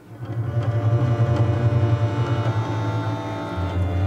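Contrabass balalaika playing deep, sustained bass notes. A new note comes in just after a brief lull at the start, and the note changes a little before the end.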